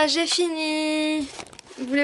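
A woman's voice talking, with one drawn-out vowel held for most of a second, then a short pause.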